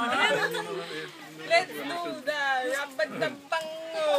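A group of people talking and laughing together, several voices at once.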